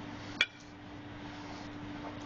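One sharp tap on a plastic cutting board about half a second in, as a peeled garlic clove or the knife is set down, over a steady low hum.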